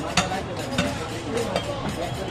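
Indistinct voices talking in the background, with a sharp knock on the wooden chopping block just after the start and a couple of lighter knocks later.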